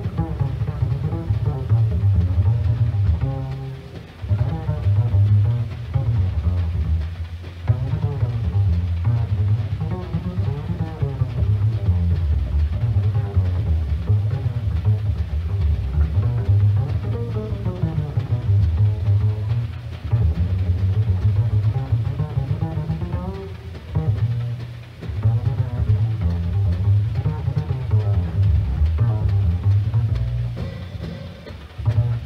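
Jazz double bass played pizzicato as a solo: a running line of low plucked notes, broken by a few short pauses.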